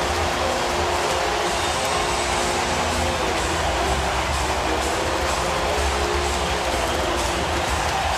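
Home-run train horn at the Astros' ballpark sounding long, held multi-note chords over steady crowd noise, celebrating an Astros home run.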